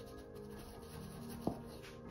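Bristles of a paintbrush scratching and dabbing acrylic paint onto canvas, over soft background music. A single sharp tap about one and a half seconds in.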